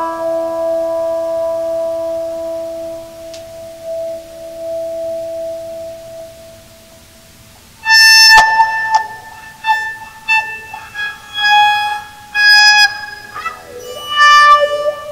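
Electric guitar played with a cello bow: one held bowed note fades slowly over the first seven seconds. After a brief quiet, the bow comes back in with a sharp scrape and a run of sustained bowed notes, some sliding in pitch.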